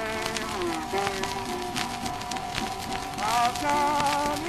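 Instrumental passage from a 1924 acoustic-era 78 rpm record: guitar under a buzzy, sliding wind-played melody line, with record surface crackle.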